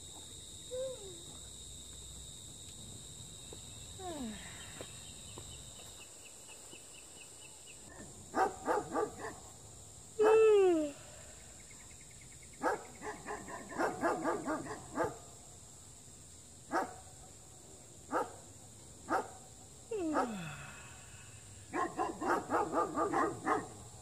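A dog barking in irregular bursts of quick barks, with a long yelp that falls in pitch about ten seconds in and is the loudest sound, and another falling yelp near twenty seconds.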